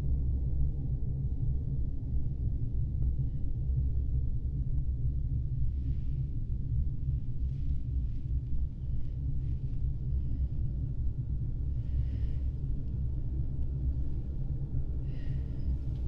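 A steady low rumbling drone, with a few faint soft noises higher up over it.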